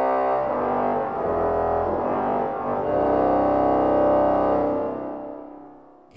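The 1954 Aeolian-Skinner pipe organ's pedal Posaune 16' reed, with the 8' pedal reed added, sounding loud, sustained low notes that change about a second in and again about three seconds in. The sound is released near the end and the church's reverberation dies away.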